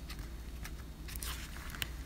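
Faint rustling and a few soft ticks of cardstock being handled as a paper gift-card envelope's flap is pressed and closed, over a low steady room hum.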